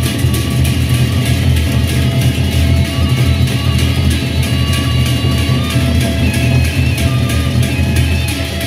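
Gendang beleq ensemble playing: large double-headed Sasak barrel drums beaten in a fast, continuous rhythm, with hand cymbals crashing over it and steady ringing metallic tones.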